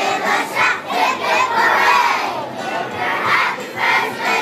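A class of about six-year-old children singing together at full voice, close to shouting, with a long held note in the middle.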